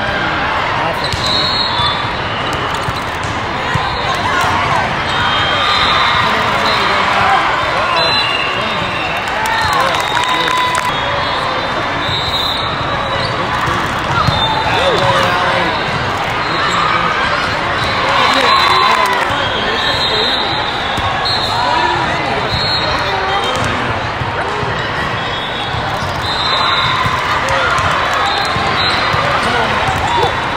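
Busy volleyball hall: a steady babble of many voices and spectators, with balls being struck and bouncing, shoes squeaking on the sport court, and short high referee whistles every few seconds, all echoing in the large hall.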